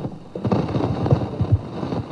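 Rumbling, crackling handling noise from the table microphones being moved about, starting about half a second in.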